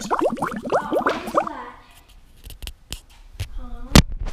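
Indistinct talking for about the first second and a half, then a quieter stretch with a few separate sharp clicks, a short hummed sound, and one loud click at the very end.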